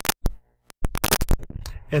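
Choppy run of sharp clicks and crackles, broken by brief total dropouts to silence: a glitching, stuttering audio playback.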